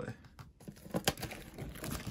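Plastic shrink wrap on a tin collector's chest crinkling, with scattered sharp clicks and knocks, as the chest is handled and unwrapped, starting about half a second in.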